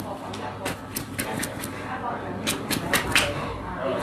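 Quick, irregular series of sharp slaps from gloved hands striking a person's thigh during Tit Tar bone-setting treatment, about a dozen in two loose clusters.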